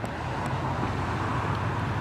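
Steady low background rumble of outdoor traffic noise, even throughout, with no distinct events.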